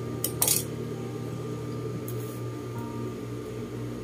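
Juki industrial sewing machine's motor humming steadily while the machine is switched on but not stitching, with two short metal clinks about half a second in.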